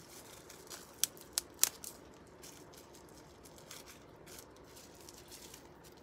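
Hands handling a freshly unwrapped necklace and its packaging: three sharp little clicks a second or so in, then faint rustling and light ticks.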